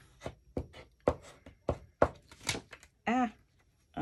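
Hands handling a paper cutout and glue on a collage page: a run of light taps and paper noises, about three a second, then a short hummed voice sound near the end.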